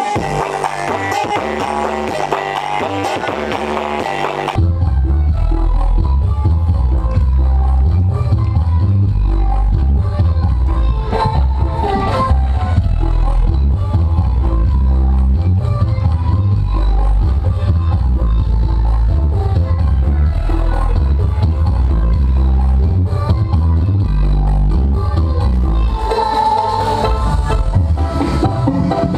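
Loud dance music with very heavy bass played through a truck-mounted sound-system speaker stack. About four and a half seconds in, the sound switches abruptly from a brighter mix to one dominated by deep bass.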